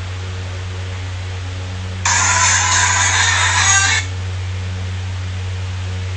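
Steady low electrical hum, with a loud hissy rushing burst about two seconds in that lasts some two seconds and then cuts off.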